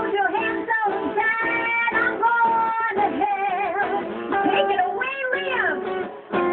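A woman singing over acoustic guitar, with long held notes that waver and slide between pitches.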